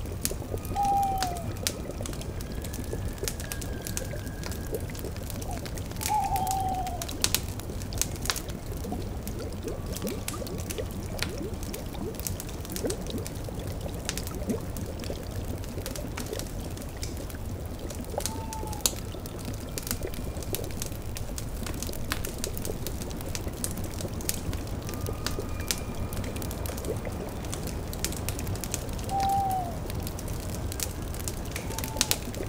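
Sound-effect ambience of a bubbling cauldron over a crackling fire: a steady low bubbling under sharp crackling clicks. An owl hoots four times, each a short hoot falling in pitch: about a second in, at about six seconds, around nineteen seconds and near the end.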